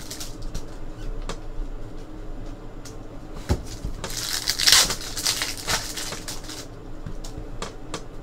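Foil trading-card pack wrapper being torn open and crinkled by hand, with the cards inside sliding and clicking against each other. A single knock comes about three and a half seconds in, and the crinkling is loudest just after it, for about two seconds.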